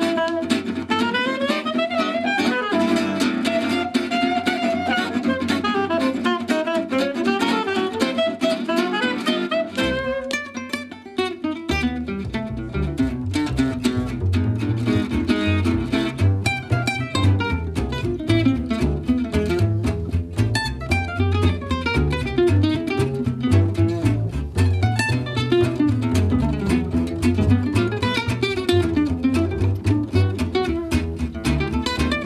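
A small jazz band plays live: tenor saxophone carries the melody over acoustic guitar. After a brief lull about ten seconds in, a plucked upright bass comes in strongly under the guitar.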